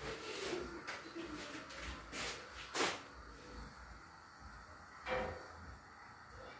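A few short knocks and clatters of kitchen things being handled, the loudest near the middle.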